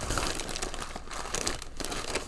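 Thin plastic packaging bag crinkling as it is handled, louder near the start and again about one and a half seconds in.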